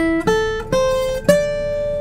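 Acoustic guitar playing four single picked notes in turn, climbing in pitch, with the last note ringing on. These are notes of the A minor pentatonic scale at the fifth fret, played as a little-finger stretching exercise.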